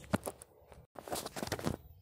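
Handling noise: short rustles and clicks as the camera and a paper spiral notebook are moved, then a brief gap and a second stretch of rustling.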